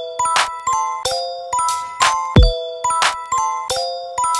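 Electronic bass house instrumental beat: short bell-like synth stabs over a steady pattern of sharp percussion hits, with one deep falling kick drum hit about two and a half seconds in.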